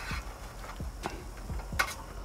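Scattered light clicks and taps of freshly fried french fries and a metal spatula on a wire cooling rack over a metal sheet pan, about half a dozen over two seconds with the sharpest near the end, above a faint steady hiss.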